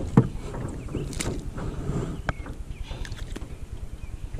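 Wind buffeting the microphone over water slapping against a small riveted jon boat, with one sharp knock just after the start and a few fainter clicks.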